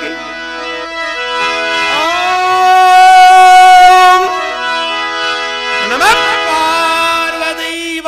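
Harmonium playing sustained reedy notes and chords, with a singer's voice sliding up into a long held note about two seconds in, the loudest part, and sliding up again near six seconds.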